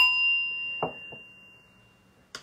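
A small meditation bell struck once, ringing with a clear high tone that fades away over about two seconds, marking the start of the next recitation. A soft knock comes just under a second in.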